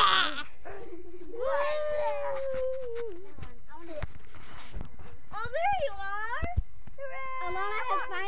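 A child's voice making long, wordless, drawn-out sounds that slide up and down in pitch, with a few short knocks from the phone being handled.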